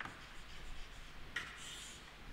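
Chalk writing on a chalkboard: faint scratching strokes as words are written, with a longer scrape about one and a half seconds in.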